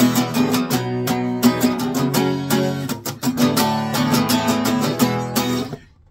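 Acoustic guitar strummed in a quick, even rhythm over ringing chords, playing a building intro riff; the playing stops just before the end.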